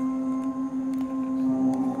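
A male singer holding one long note over a held keyboard chord, a slight vibrato coming in near the end.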